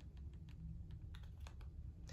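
Faint clicks of a TV remote's buttons being pressed several times in quick succession, stepping down through a menu.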